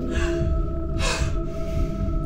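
A woman gasps twice, two short sharp intakes of breath about a second apart, over a steady, ominous droning music score.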